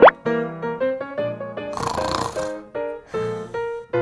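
Light children's background music of short plucked notes, opening with a quick rising whistle-like glide. Two soft breathy hissing sounds come about two and three seconds in.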